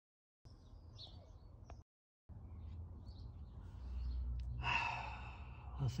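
A man's breathy sigh, about a second long, near the end, over faint outdoor background with a few small bird chirps about a second in. The sound cuts out to silence twice briefly at edit joins.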